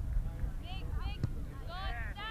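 High-pitched shouts from youth soccer players and spectators, with a single sharp thud of a soccer ball being kicked a little over a second in, over a low steady rumble.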